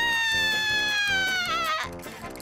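A cartoon character's long, high-pitched scream, one held note that sags slightly in pitch and breaks off just before the end, over background music with a steady beat.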